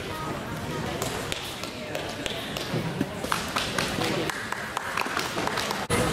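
Indistinct chatter of people in a gym, with scattered light taps and clicks.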